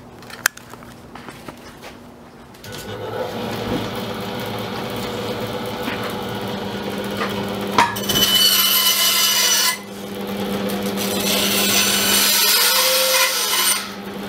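A click, then a Metabo BAS 261 benchtop band saw starts running about three seconds in with a steady hum. It cuts a strip of wood twice, growing louder during each cut: once from about eight seconds, then again from about ten seconds until just before the end.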